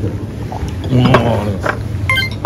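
Handling noise from a handheld camera rubbing and knocking against a jacket, with a few sharp clicks and a short burst of voice about a second in, over a steady low room hum.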